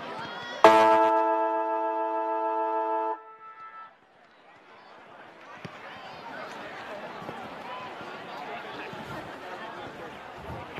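Football ground siren sounding once, a steady chord of several tones held for about two and a half seconds before cutting off sharply, followed by faint crowd chatter.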